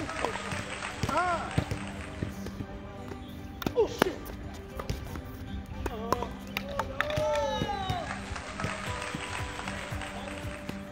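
Tennis rally: sharp pops of rackets striking the ball, loudest about four seconds in and again near seven seconds, over background music.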